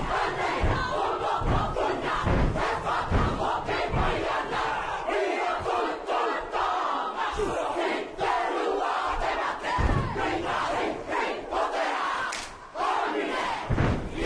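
Haka performed by a large kapa haka group of men and women: massed voices shouting and chanting in unison. Heavy foot stamps and body slaps keep time, densest in the first few seconds and again near the end.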